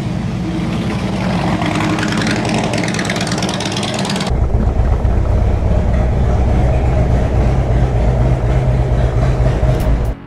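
Harley-Davidson Road King Classic V-twin engine rolling at low speed, then from about four seconds in idling steadily inside a garage with a strong low rumble.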